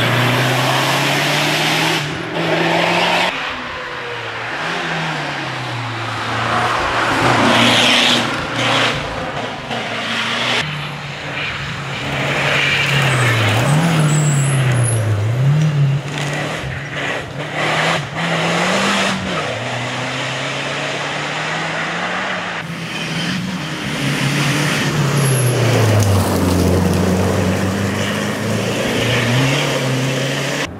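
A Lancia Delta rally car's engine driven hard at full throttle, its pitch repeatedly climbing and then dropping at each gear change or lift for a corner. The sound breaks off abruptly several times between separate passes.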